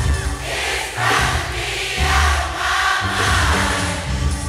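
Live neo-soul band music with many voices singing long held notes together, choir-like, over a bass that pulses about once a second.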